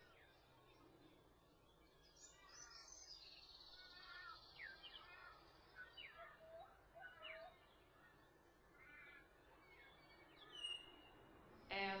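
Pied butcherbird singing faintly: a run of separate whistled notes, several gliding downward, with a few lower flute-like notes in the middle.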